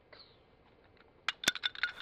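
Small toy van tumbling and clattering on asphalt: after a near-silent first second, a quick run of sharp clicks and clinks in the last second.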